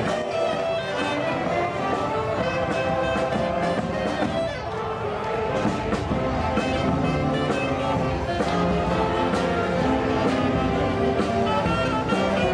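Mummers string band playing an instrumental tune live, with saxophones, banjos and accordions over a steady strummed beat.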